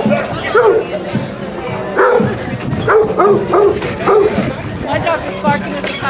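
A dog barking over and over in short barks, about one every half second, with people talking around it.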